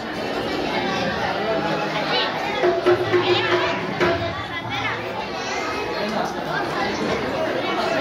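Many voices, children's among them, talking over one another in a large hall.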